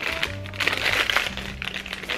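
A small plastic packet crinkling as it is torn open by hand, over background music.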